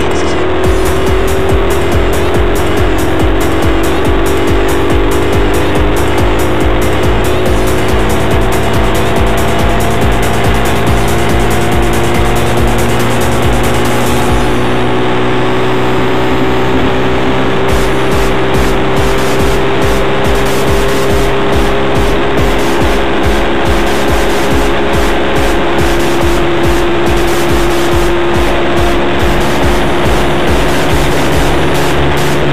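Moped engine running steadily at cruising speed, its drone sinking slightly in pitch and then holding, under heavy wind rumble on the camera microphone.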